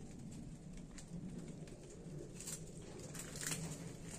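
Faint, low cooing of a pigeon in bouts, with a few light clicks in the second half.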